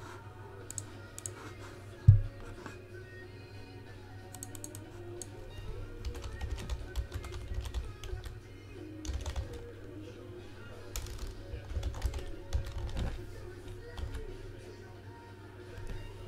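Computer keyboard typing, keys clicking in short irregular runs as names are entered. There is a single low thump about two seconds in.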